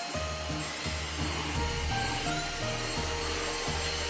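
Cordless stick vacuum cleaner running steadily under background music with a stepping bass line.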